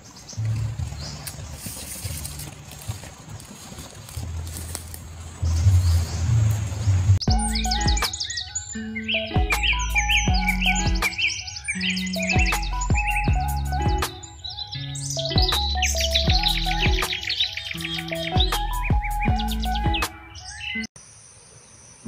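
Intro background music: low bass notes at first, then about seven seconds in a fuller tune with a regular bass line and quick high bird chirps over it, stopping shortly before the end.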